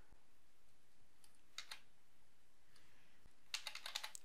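Faint clicks of computer keyboard keys over low room hiss: two single clicks between one and two seconds in, then a quick run of clicks near the end.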